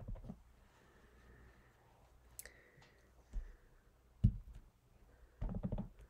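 Rubber stamp being tapped onto an ink pad and pressed onto cardstock: a quick run of light taps at the start, a single sharper knock about four seconds in, and another quick run of taps near the end.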